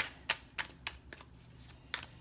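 A deck of tarot cards being shuffled by hand: a run of short, crisp card flicks, about three a second.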